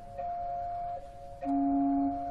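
Chamber organ continuo playing held chords of pure, steady tones that do not die away. The chord changes near the start and again about a second in, and a lower note comes in about one and a half seconds in.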